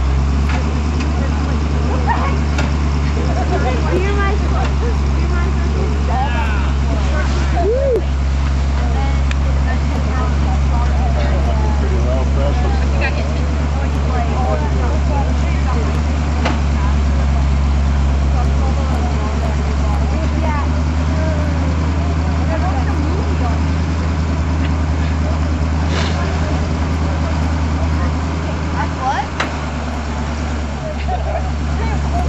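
Tow truck's engine running steadily, a low even hum, with people talking in the background.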